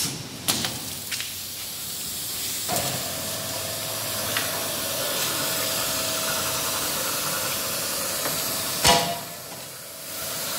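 Hot-foil edge gilding machine running with a steady hiss. A faint steady hum joins it about three seconds in, and a short, loud, sharp burst comes near the end, after which the hiss drops away.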